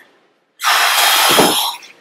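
Loud rustling of clothing and sofa upholstery as a person stands up from a sofa, lasting about a second.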